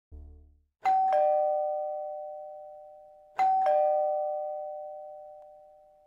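Two-tone ding-dong doorbell chime sound effect, a higher note then a lower one, sounding twice about two and a half seconds apart, each ringing out slowly. A brief low tone comes just before the first chime.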